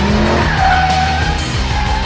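Tyres of a Mercedes-Benz E63 AMG squealing as the car slides through a corner. The squeal sets in about half a second in, over loud music.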